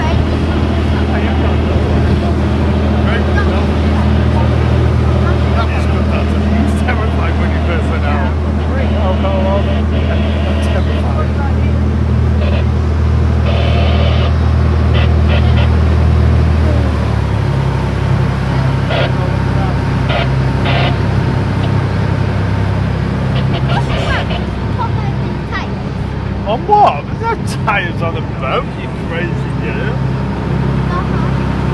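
Speedboat engine running at low harbour speed, a steady low hum whose note changes to a rougher, pulsing one about halfway through.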